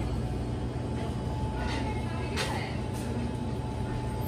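A steady low hum of kitchen machinery, with a few faint clicks and scrapes as a spoon works in a stainless steel mixing bowl, the clearest about halfway through.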